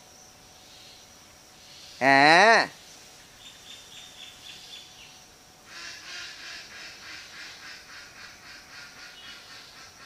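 A short vocal cry that rises in pitch, about two seconds in and the loudest sound. Faint rapid chirping follows from about six seconds on.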